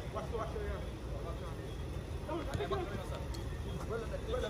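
Faint, distant shouts and calls of footballers during play, over a steady low rumble.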